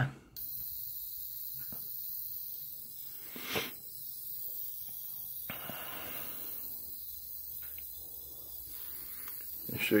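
A steady, very high-pitched whine from an ultrasonic piezo tweeter, driven by an NE555 oscillator through an LM386 amplifier, switching on about half a second in as the speaker is connected. The tone is still low enough in pitch to be heard. A brief handling clatter comes in the middle.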